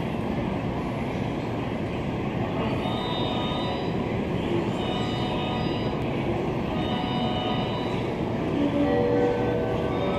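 JR West 225 series electric train standing at a station platform, with a steady hum and hiss of train and station noise. Faint high tones come and go through the middle.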